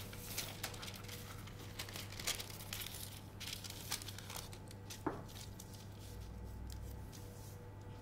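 Graph-paper pattern pieces rustling and sliding on a table as they are picked up, laid together and smoothed flat by hand, faint, with one sharper tap about five seconds in.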